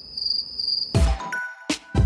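Crickets chirping, a steady high trill, for about the first second; then an electronic music intro cuts in with sharp hits.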